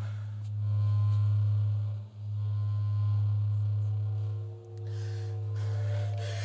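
A deep, steady low drone from the stage score, dipping briefly twice, with faint higher held tones above it.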